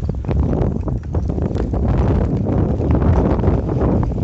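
Wind rushing over the microphone with a dense, irregular clatter of knocks and bumps from a vehicle travelling over a rough gravel road.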